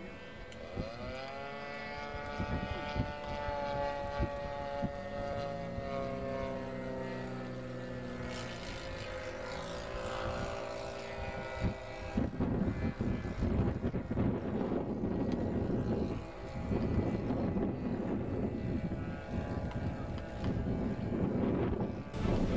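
A radio-controlled model plane's propeller engine running, rising in pitch about a second in as it is opened up for takeoff, then holding a steady drone. From about twelve seconds in a rough, uneven rumbling noise covers the engine while the plane climbs away.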